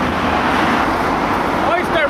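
A car driving past close by on the street, its road noise swelling and then fading, over a low wind rumble on the microphone. A voice begins near the end.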